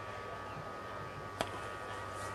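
Low steady hum and hiss from an open commentary microphone between calls, with a single short click about one and a half seconds in.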